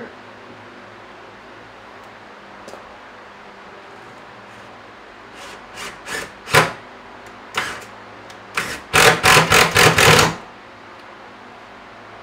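Cordless driver driving a screw through the back of a base cabinet into a wall stud: a few short bursts about halfway through, then a louder run of about a second near the end.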